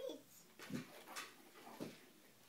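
A few faint, short vocal sounds, about a second apart.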